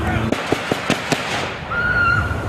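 A police rifle fired five times in rapid succession, all within about a second. A high, held scream starts near the end.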